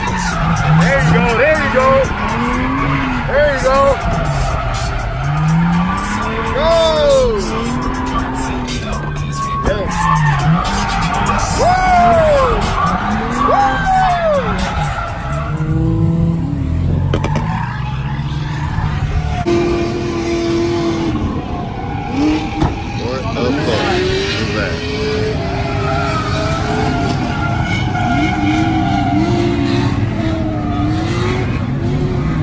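Drift car engines revving up and down over and over under throttle blips while sliding, with tyre squeal.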